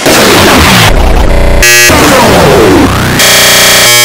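Deliberately distorted, extremely loud noise effect with falling pitch sweeps running through it, broken by harsh buzzing tones about a second and a half in and again near the end.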